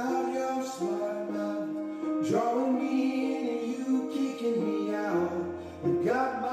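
Music: a man singing held notes over an instrumental backing, with upward pitch slides about two seconds in and near the end.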